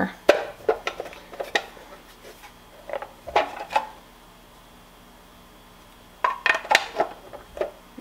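Hard plastic parts of a stand-mixer food mill attachment clicking and knocking as they are handled and pressed together. The clicks come in a cluster in the first second and a half, a few more around three seconds in, a short pause, then another cluster about six seconds in.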